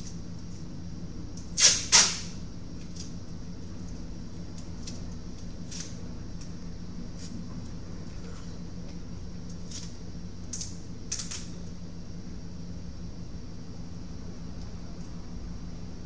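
Small sharp clicks of tweezers and a soldering iron tip against a circuit board while soldering an SMD LED: two loud ones close together about two seconds in, then a few faint ones, over a steady low hum.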